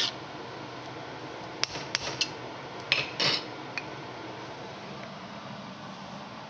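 Several short clinks and knocks of cookware and utensils against a steady background hum, about seven in the first four seconds, one of them a slightly longer scrape a little after three seconds.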